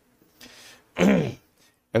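A man clears his throat softly, then says a single word.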